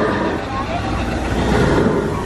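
Mine-train roller coaster cars rolling along the track with a steady low rumble, with people's voices mixed in.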